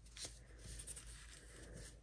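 Faint rustle of a paper napkin being folded and smoothed flat by hands on a countertop, with a small tick about a quarter second in.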